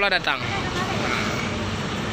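Steady, even vehicle engine noise with a faint low hum; a man's speech trails off in the first half second.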